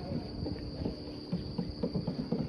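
Steady, high-pitched chirring of insects such as crickets, with irregular low knocks and rumble underneath.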